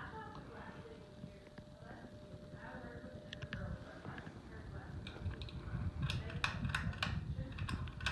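Several sharp clicks and rattles in the last few seconds as a Hampton Bay Huntington ceiling fan's pull chain is pulled to switch the fan to high speed, over a low rumble and background conversation.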